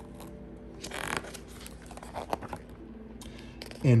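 A page of a hardcover picture book being turned: a brief paper rustle about a second in, then a few softer crackles of paper as the page is laid flat.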